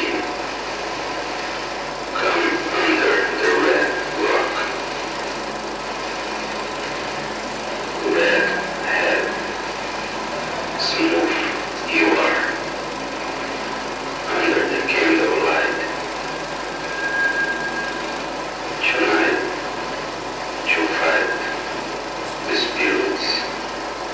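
A voice speaking in short phrases separated by pauses of a few seconds, over a steady mechanical whir, most likely from the running film projectors.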